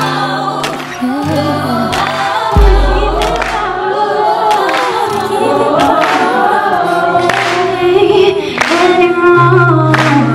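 Pop song with layered female vocal harmonies and runs over a beat and deep bass notes.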